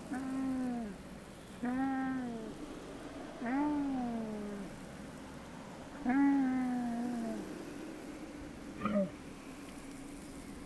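An animal calling: four drawn-out cries about a second long, each rising a little and then sliding down in pitch, with a short sharp call near the end.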